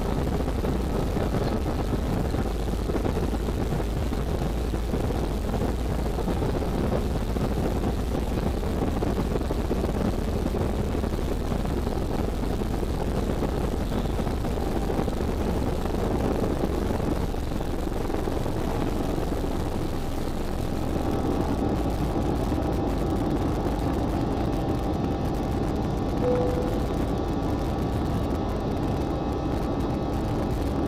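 Cabin sound of an Airbus A320-family jet's engines at takeoff power during the takeoff roll, with a heavy rumble from the runway. About two-thirds of the way through, the rumble fades as the plane lifts off, leaving a steadier engine hum with a faint whine as it climbs.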